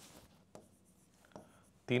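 Marker pen writing on a whiteboard: a couple of faint, short strokes.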